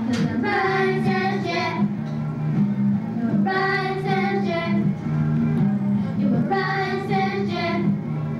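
A young girl singing a children's Christmas song into a microphone over instrumental accompaniment, in three phrases with short pauses between them.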